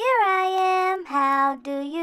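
A child-like voice singing a nursery-rhyme tune: one long note that rises and then holds, followed by two shorter, lower notes.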